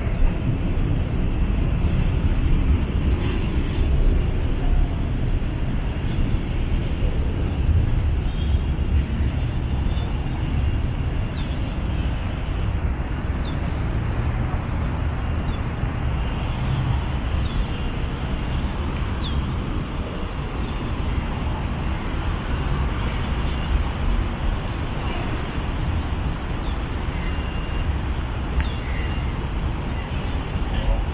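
Freight train's container wagons rolling past on the rails as the train departs, a steady rumble.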